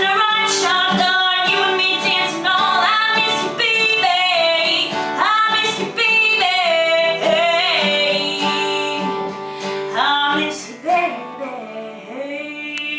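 A woman singing a country song to her own strummed acoustic guitar, ending on a long held note near the end as the strumming stops.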